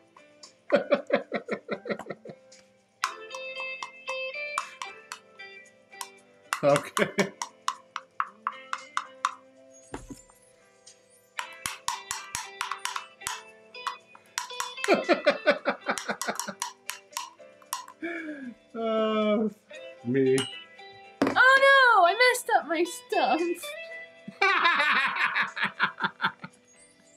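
Background music under bursts of laughter and wordless voice sounds, with pitch sliding up and down near the end.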